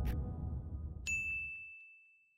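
Background music fading out, then a single bell-like ding about a second in, its thin high tone ringing on steadily.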